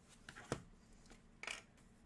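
Faint handling sounds of a rigid plastic trading-card holder being handled and set down on a desk: a sharp click about half a second in, then a brief rustle about a second and a half in.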